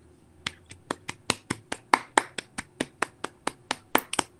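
One person clapping hands steadily, about five claps a second, picked up by a video-call microphone with a faint low hum behind it.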